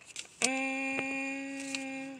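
Car horn heard from inside the cabin: one steady, unwavering note that starts abruptly about half a second in and holds for about a second and a half, set off by pressure on the steering-wheel hub.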